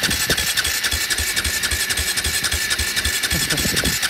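2009 KTM 450 SX quad's single-cylinder four-stroke engine being cranked by its electric starter: a steady whine over a fast, even chug of about five beats a second that never catches. It will not fire because the fuel tap had been left off.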